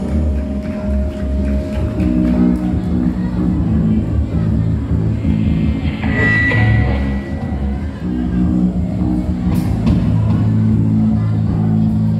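Live rock band playing an instrumental passage: electric guitars, bass guitar and drums. A high guitar note is held for about a second halfway through.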